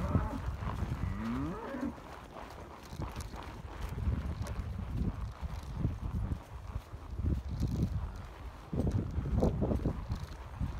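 Cattle mooing as the herd is driven across a pasture, with one call gliding upward about a second in. Low rumbling noise runs under the calls.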